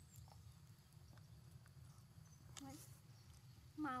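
Near silence over a steady low outdoor hum, with a few faint clicks, then a woman's voice starting just before the end.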